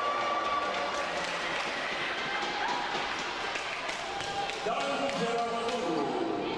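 Players and spectators calling out and shouting during a volleyball match, with a series of sharp knocks of a ball on the hall floor from about a second and a half in.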